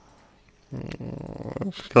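Near silence, then about a second of a man's low, breathy, throaty sound in a pause between words, and his speech resuming near the end.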